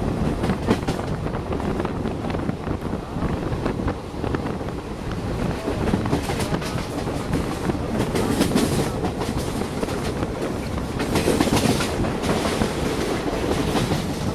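Indian express passenger coach running at speed, heard from its open door: a steady rumble with the wheels clattering over rail joints and points.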